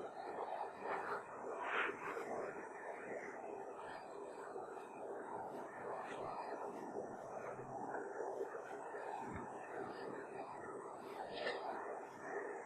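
Soft whispering and paper rustling from a group of listeners turning to the same page in their prayer texts.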